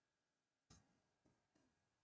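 Near silence with a few faint clicks: one about two-thirds of a second in and two softer ones after it.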